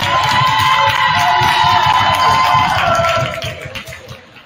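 Gym crowd cheering and yelling, with several long held shouts that drop in pitch and die away about three and a half seconds in.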